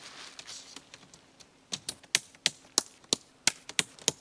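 Plastic clips on a tent body being snapped onto its poles: a soft rustle of tent fabric, then a quick run of sharp clicks, about four a second, in the second half.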